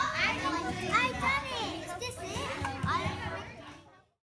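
Several children chattering and calling out at once, their high voices overlapping, fading out just before the end.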